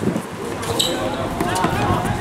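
Players calling out on a hard outdoor court, with the thud of a football being kicked and bouncing off the concrete surface.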